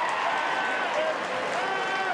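Stadium crowd noise from a rugby match, a dense mass of voices with several short shouts rising above it.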